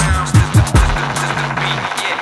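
Dubstep instrumental at 140 bpm: a deep bass line under a steady pattern of drum hits. Near the end the bass drops out briefly before returning.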